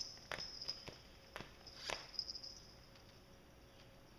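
Cats' claws and bodies scraping over a sisal scratching mat: a few faint, short scratchy strokes in the first two seconds, then only a faint high hiss.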